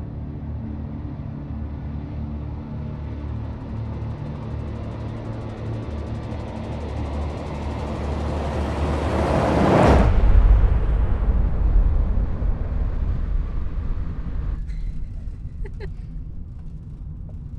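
A dark ambient drone with a rising swell of noise that builds and then cuts off abruptly about ten seconds in. A low, steady rumble of a car's interior on the road follows, with faint voices near the end.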